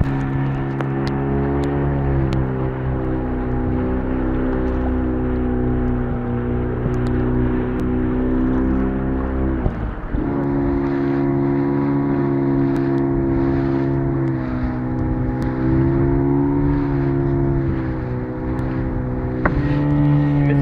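Small boat's outboard motor running steadily at speed, its pitch wavering a little as the hull rides the waves and dipping briefly about halfway through, over rushing, splashing sea water.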